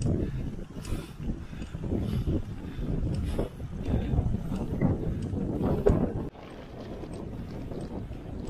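Wind buffeting the microphone of a camera riding on a road bicycle, rumbling in uneven gusts. It drops to a quieter, steadier rush about six seconds in.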